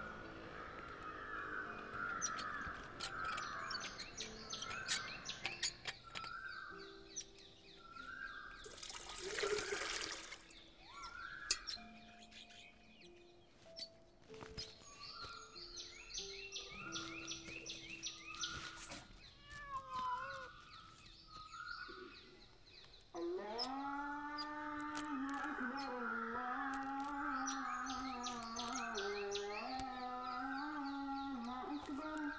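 Birds chirping and calling again and again over a few soft held notes of background music. A short rush of noise comes about a third of the way in. About three-quarters of the way through, a louder, wavering melody line of the background score comes in.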